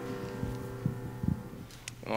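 Piano music ending, the sound of its last chord dying away, with a few soft low thumps.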